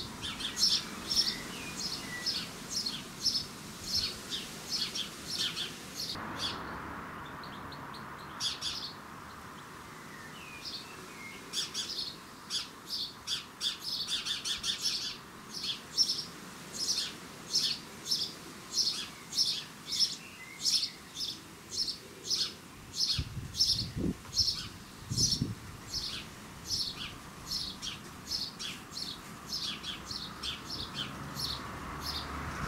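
House sparrow chirping over and over, about two chirps a second, falling silent for a few seconds about seven seconds in, then starting again with a quicker run of chirps.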